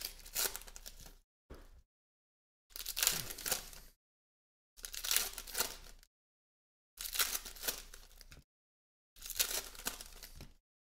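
Sports card pack wrappers being torn open and crinkled in about six short crackling bursts a second or two apart, with dead silence between them.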